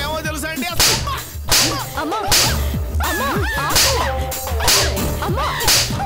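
Dramatic TV-serial background score: a string of sharp whip-like whoosh hits, about one every three-quarters of a second, over a steady low drone and wavering synthesized tones.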